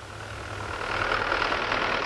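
Farm tractor engine running steadily, growing louder over about the first second.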